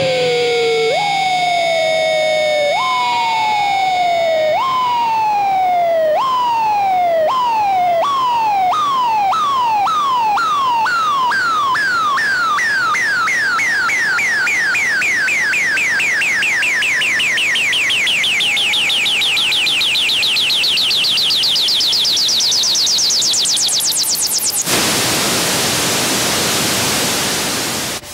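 Electronic effect from the band's rig: a siren-like tone that falls in pitch over and over, the repeats coming faster and climbing higher until they run into a rising whine. It then switches suddenly to a loud wash of hiss that fades out.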